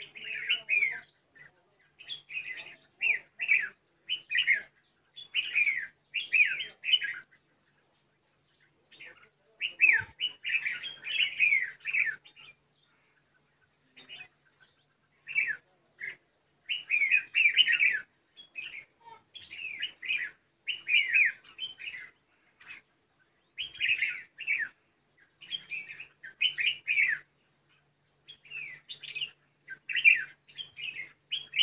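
Red-whiskered bulbuls calling: bursts of bright, rapid chirping phrases lasting a second or two each, broken by a few short pauses.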